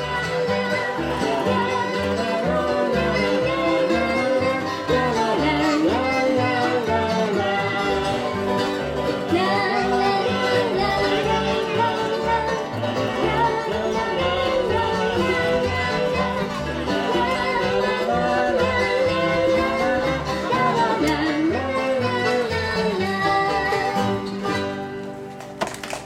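Live acoustic bluegrass band playing: banjo, guitar and fiddle with voices singing, the song dropping away in the last couple of seconds.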